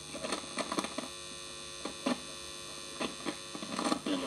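Steady electrical hum from a homemade foxhole radio played through a guitar amplifier, with no station coming through. About eight sharp crackles and clicks are scattered through it as the detector's contact is moved across the razor blade to find a signal.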